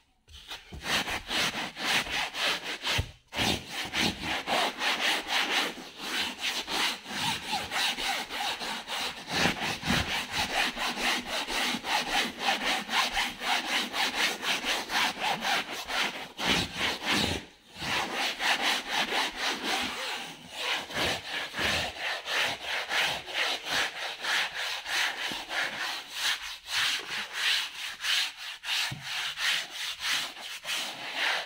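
Sofa upholstery fabric being scrubbed by hand with a brush in rapid back-and-forth strokes, about three a second, working a dirt-dissolving cleaning agent into the fabric before extraction washing. The scrubbing breaks off briefly twice.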